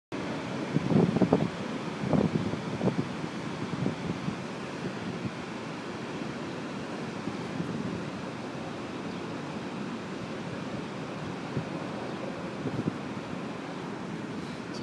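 Steady rushing roar of water from the Niagara River and falls below. Wind buffets the microphone in a few gusts in the first three seconds and again near the end.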